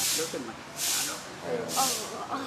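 Three short, sharp hissing bursts a little under a second apart, with voices between them.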